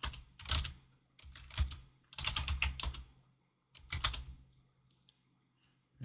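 Typing on a computer keyboard: short runs of keystrokes with pauses between them, quiet for the last second or so.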